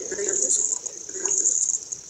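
Coultous Box ITC IP spirit box app playing through a phone speaker: a steady high hiss with short, scattered, echoing snippets of chopped audio.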